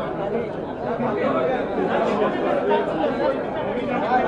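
Overlapping chatter of many voices talking at once, with no single speaker standing out.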